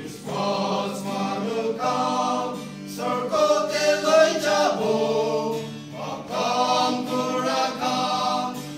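A male vocal group singing a hymn together in harmony, in sustained phrases with short breaks between them, accompanied by an acoustic guitar.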